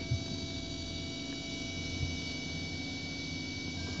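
Desktop 3D printer running mid-print: a steady whine from its motors over a low hum, with a couple of soft knocks.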